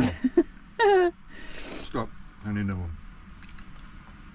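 Short wordless voice sounds: a brief high 'ooh' falling in pitch about a second in, a breathy rush, then a low 'mm' as the man bites into his sandwich.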